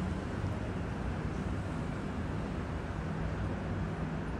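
Steady low rumble of outdoor city background noise, with a faint continuous hum and no distinct events.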